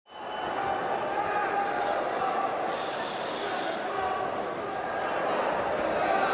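Boxing arena ambience: many voices of a crowd chattering and calling out in a large hall, with a brief hiss about three seconds in.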